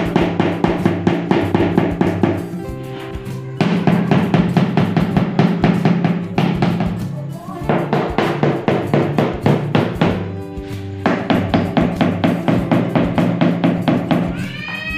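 Background music with a fast, steady drum beat over sustained chords that change every few seconds.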